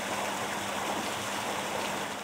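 Steady rush of turbid, foaming wastewater pouring from a sewage treatment plant's outfall into a river: overflow discharge that the plant cannot treat when heavy rain raises the flow.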